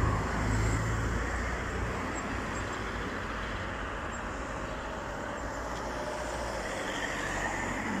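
Cars passing on a road, tyre and engine noise. The rumble of one car going by is loudest in the first second and fades away. The road noise then rises again near the end as another car comes by.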